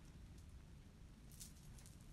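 Near silence with faint rustles of long hair being handled, a few soft brushes about one and a half seconds in.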